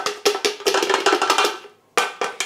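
Rapid clattering knocks of a metal insert against a stainless steel Thermomix mixing bowl, with a ringing tone under them. The clatter stops about one and a half seconds in, and one sharp click follows near the end.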